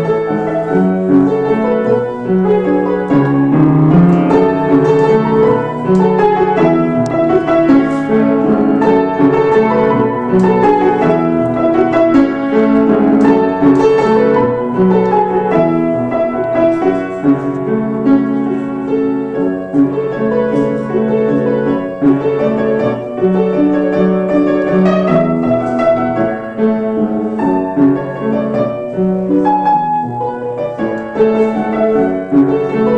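Upright piano played solo: a continuous piece of many notes.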